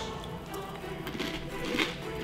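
Background music, with faint crunching of a crunchy snack being chewed near the end.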